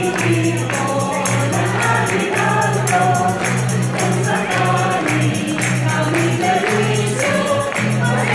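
A small mixed choir of men and women singing together, accompanied by an acoustic guitar and a steady low bass line that changes note about once a second, with a light rhythmic percussion keeping time.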